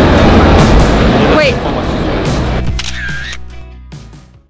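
Street crowd noise under background music for the first second and a half, then held music notes fading out, with a camera shutter click near the end.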